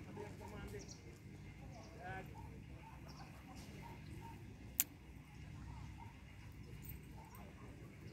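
Faint, distant voices over steady low outdoor rumble, with a single sharp click about five seconds in.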